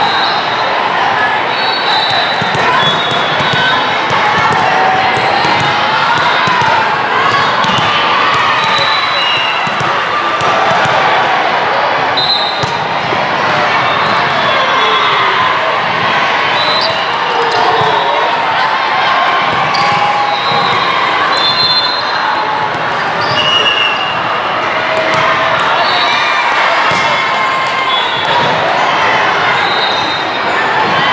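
Echoing hall full of volleyball play: balls being hit and bouncing on the court, short whistle blasts every few seconds, and a constant babble of players' and spectators' voices.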